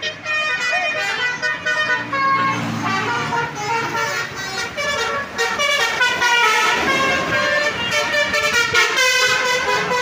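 Tour buses' musical air horns (basuri) playing a tune of stepped notes as the buses drive past, with engine and traffic noise underneath.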